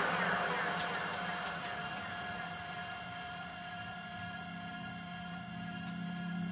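Breakdown in a progressive house track: the drums drop out and a sustained synth pad chord holds quietly while the wash of the louder passage fades away.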